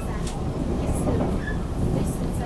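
Running noise of a TEMU1000 Taroko Express electric train heard from inside the passenger cabin: a steady low rumble with a few faint clicks.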